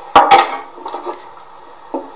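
Two sharp knocks close together, then lighter clatter: hand-held steel filling knives with plastic handles knocked against a tabletop as they are picked up.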